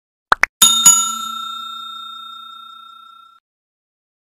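Subscribe-animation sound effects: a quick double click, then a bell struck twice, ringing out in several clear tones and fading away over about two and a half seconds.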